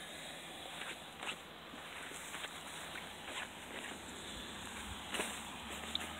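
Soft footsteps through the garden over dry grass, a handful of light steps.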